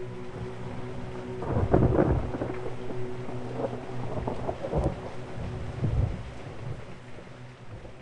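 Rain falling steadily with several rolling rumbles of thunder, the loudest about two seconds in. A held ambient music drone fades out underneath, and the storm sound fades away near the end.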